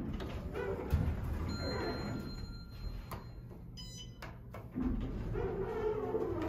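Otis hydraulic elevator doors sliding closed after the close button is pressed, with a high steady tone for about a second and a half and a short electronic beep about four seconds in, over background music.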